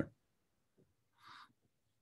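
Near silence in a pause of video-call audio, with one brief faint hiss about a second in.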